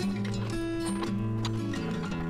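Background music with sustained held notes at a steady level.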